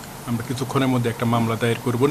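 Speech only: a man talking, beginning just after the start following a brief pause.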